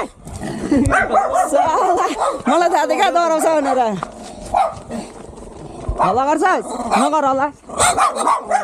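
Several small white dogs barking behind a fence, in repeated bouts with a quieter pause in the middle.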